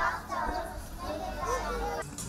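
Several young children chattering and calling out at once, over a low steady rumble.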